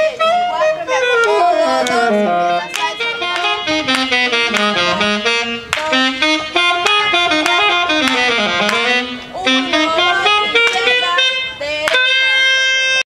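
Live band playing a lively dance tune: a melody that glides and steps quickly, with sharp percussion hits throughout.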